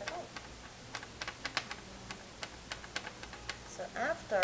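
A quick, uneven run of about a dozen light, sharp clicks, starting about a second in and stopping shortly before the end.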